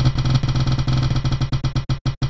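Spinning prize-wheel sound effect: a rapid run of drum-like ticks that slows down in the last half second as the wheel winds down.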